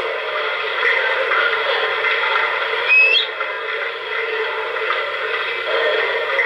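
Sound system of a standing MTH O-gauge N&W J-class model steam locomotive playing its idle sounds through a small onboard speaker: a steady, thin hiss with a short rising chirp about three seconds in.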